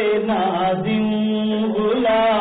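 A man's voice singing a devotional Urdu poem (kalam) in a chanted, melismatic style, with long held notes that slide up and down in pitch.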